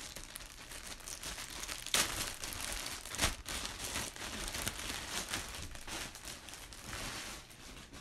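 Clear plastic bag crinkling and rustling as a shirt is pulled out of it, with two louder crackles about two seconds in and just after three seconds.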